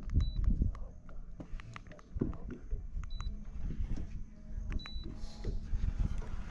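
Low rumble of wind on the microphone with scattered light clicks and knocks of fishing gear being handled in a small aluminium dinghy, and three faint short high beeps.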